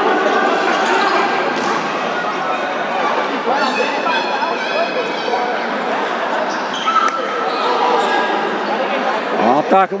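Echoing sports-hall ambience during a futsal game: a steady wash of players' and spectators' voices, with a few sharp knocks of the ball being kicked on the court.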